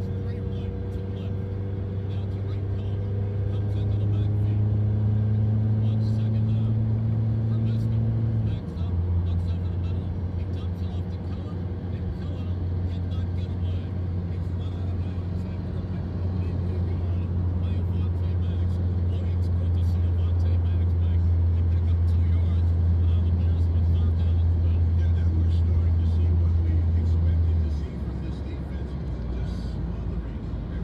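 Car engine and road noise heard from inside the cabin while driving. The engine hum rises as the car accelerates and drops in pitch with a gear change about eight seconds in. It then holds steady at cruising speed and eases off near the end.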